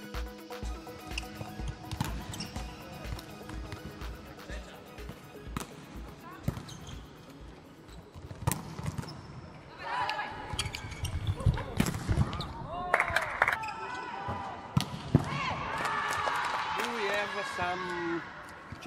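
Electronic background music with a steady beat, then, about halfway in, volleyballs being struck and bouncing on the court floor, echoing in a large hall.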